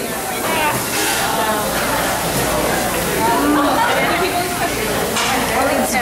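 Indistinct talking and chatter over a steady, noisy background din.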